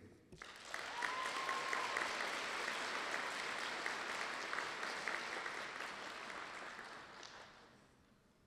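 Audience applauding. The clapping builds within the first second, holds steady, then dies away near the end.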